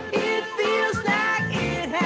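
Recorded adult-contemporary pop song with a woman singing a wavering melody over a backing band.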